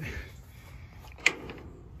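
A single sharp metallic click a little over a second in, from the metal latch hardware on a wooden chicken-run door as it is handled.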